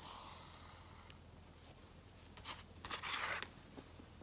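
Sewing thread drawn by hand through fabric: a soft rustle at first, then two short rasping pulls past the middle, the second longer and the loudest.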